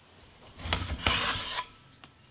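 A tablet computer being handled and slid against a surface as it is picked up: a rubbing, scraping noise lasting about a second, starting about half a second in.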